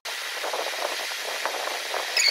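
A steady hiss of even noise with no low rumble, like air or fan noise, with a few short high chirps near the end.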